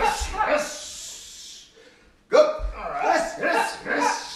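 Loud shouted drill cues, twice, each a short call trailing off into a long hissing "sh", like "rush".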